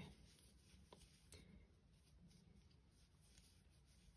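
Near silence, with faint handling sounds of a crochet hook drawing yarn through a stitch and a couple of small ticks about a second in.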